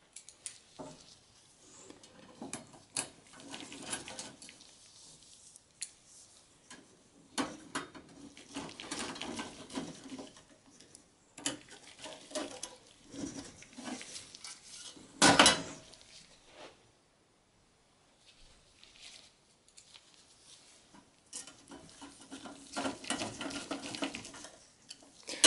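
Steel hard-drive cage and screws clinking and rattling against the sheet-metal computer case as the screws are driven back in with a screwdriver, in scattered short clicks, with one loud metallic knock about two-thirds of the way through.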